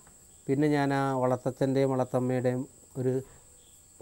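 A man speaking in short phrases, with pauses at the start and near the end. Under it a faint, steady high-pitched whine runs throughout.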